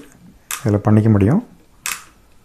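A man's voice speaking briefly. Near the end comes a single short, sharp click as the blower's small speed-regulator slide switch is moved.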